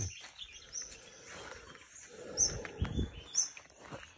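Small birds chirping repeatedly with short high-pitched calls. Under them is the rustle of someone walking through garden growth, with a few low footstep thumps a bit past halfway.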